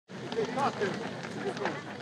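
Outdoor street ambience: faint, indistinct voices of several passers-by talking over a steady background hiss.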